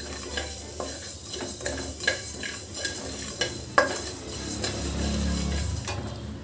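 Flat wooden spatula stirring and scraping coriander seeds, curry leaves and whole spices around a metal kadai, in irregular scrapes with small clicks of seeds against the pan, over a light sizzle from the pan.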